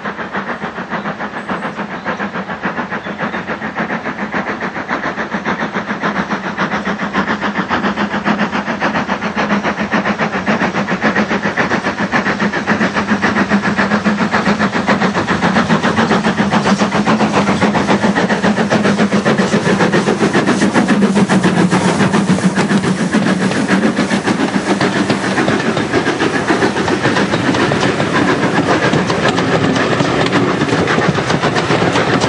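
LMS Fowler 4F 0-6-0 steam locomotive working a passenger train, its rapid exhaust beats growing steadily louder as it approaches and passes. The coaches then roll past near the end.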